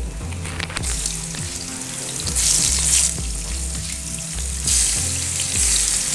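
Spice-rubbed eggplant slices frying in shallow oil in a pan, a steady sizzle. It gets louder twice, about halfway through and again near the end, as more raw slices are laid into the hot oil.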